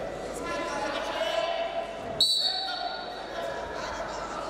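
A wrestling referee's whistle, one sharp, steady, high blast about two seconds in that lasts about a second, stopping the action on the mat. Voices shout in a large, echoing hall around it.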